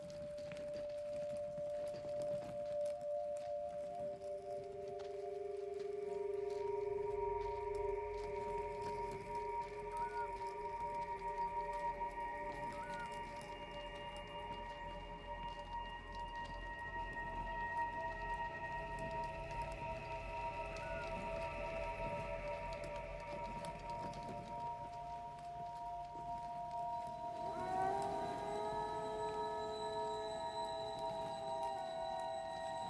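Eerie horror film score of layered, sustained drone tones that slowly build, with a low rumble joining about a quarter of the way in. A new swell of tones enters near the end.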